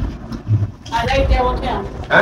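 A man's voice speaking briefly over a low rumble.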